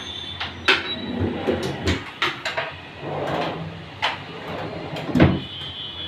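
Wardrobe drawers being pushed shut and handled, giving a series of sharp wooden knocks and clicks, the loudest about five seconds in.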